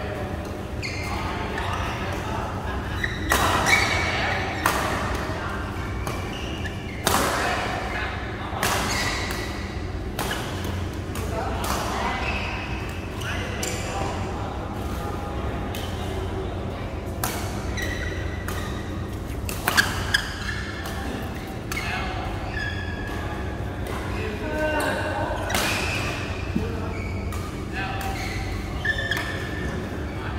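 Badminton rackets striking a shuttlecock during doubles rallies: sharp, irregular smacks, the loudest about 4, 7 and 20 seconds in, echoing in a large hall, over players' voices.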